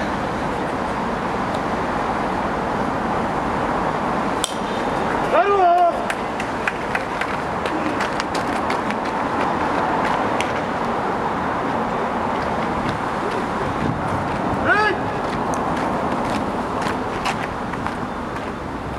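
Players' voices calling out across a baseball field over a steady background din, with two long drawn-out shouts that slide up and down in pitch, one about five seconds in and one about fifteen seconds in. A sharp click just before the first shout.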